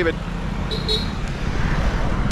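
Road traffic noise with a car driving past close by: a steady low rumble.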